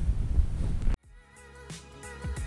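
Wind buffeting the microphone for about a second, cut off suddenly, then background music fades in with steady notes and a beat.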